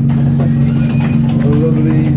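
Diesel engine of a London double-deck bus running with a steady low drone, heard inside the passenger saloon, with voices in the background.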